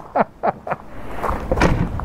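A person laughing in a quick run of short bursts, each falling in pitch, about four a second, loosening after the first second.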